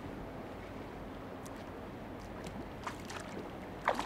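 Shallow river flowing steadily over rocks, with a few faint clicks scattered through it.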